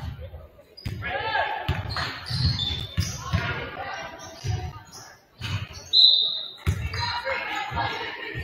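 Basketball bouncing on a hardwood gym floor in a run of thuds, with indistinct voices echoing in the large gym. A short high squeak comes about six seconds in.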